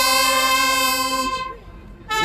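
Saxophone holding one long note, sliding up into it at the start, then breaking off into a short quieter gap near the end.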